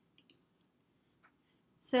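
A few faint computer mouse clicks: two quick ones just after the start and one more about a second later. A woman's voice starts speaking near the end.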